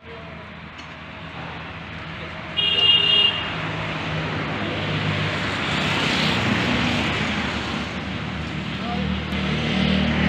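Road traffic noise with a vehicle engine running, and a short, high horn toot about two and a half seconds in, the loudest sound.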